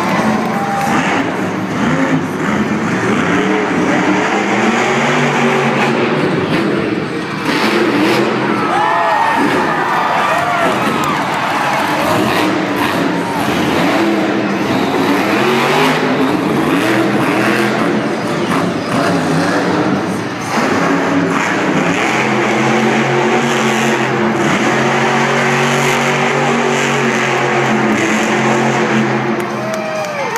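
Monster truck engines, big supercharged V8s, running loud as the trucks drive and jump in the arena. The revs rise and fall repeatedly, then hold steadier for several seconds in the second half.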